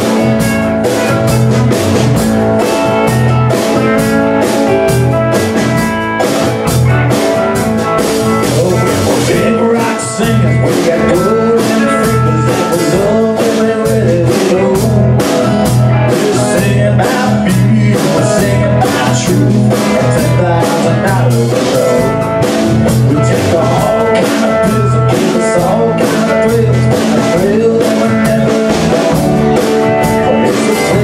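Live rock and roll band playing: electric guitar, acoustic-electric guitar, bass guitar and drum kit, with a steady drum beat.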